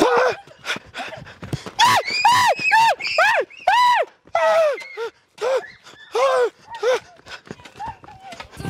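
Frightened shrieking: a rapid run of short, high cries that rise and fall in pitch, about two a second, starting about two seconds in.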